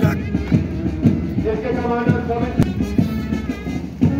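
March music for a parade, held band notes over a steady marching drumbeat.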